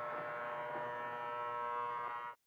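Bedside electric alarm clock going off with a steady, unbroken buzz.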